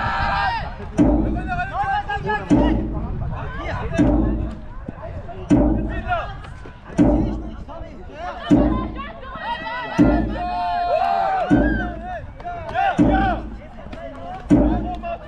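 Jugger stone-count drum beaten steadily, one low hit about every second and a half, the match's timekeeping beat. Voices shout and call out between the beats.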